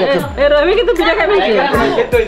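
People talking over one another: lively chatter of several voices.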